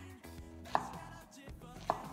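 Kitchen knife chopping an onion on a wooden cutting board: two sharp strikes about a second apart, with quiet background music underneath.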